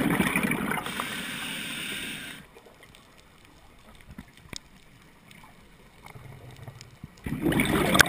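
Scuba diver's exhaled breath bubbling from the regulator, recorded underwater: a loud bubbling rush that eases and stops about two seconds in. A quiet stretch with scattered faint clicks follows, and the next exhalation starts near the end.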